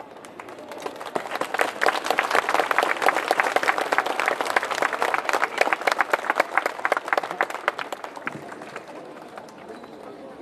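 Audience applauding, swelling over the first couple of seconds and dying away near the end.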